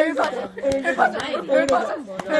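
Several people's voices chanting and talking over one another in an amateur cover of a comic song, with a few sharp clicks between phrases.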